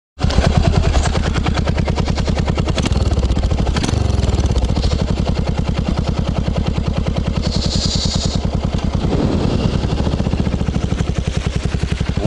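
Yamaha SR400's single-cylinder four-stroke engine running under way, its exhaust a steady, rapid, even beat of pulses. Its note shifts briefly about four seconds in.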